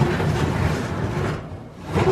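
Metal oven rack sliding out along its runners, loaded with a heavy enamelled pot: a rolling metal scrape that stops about a second and a half in.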